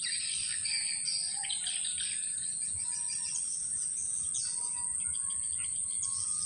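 Swamp-forest ambience: a steady, high insect drone, with birds chirping and giving short calls over it.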